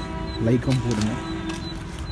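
A man's voice speaking briefly, ending in one drawn-out held note.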